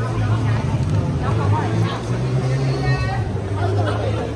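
Crowd chatter: many voices talking at once around the microphone, none in the foreground, over a steady low rumble.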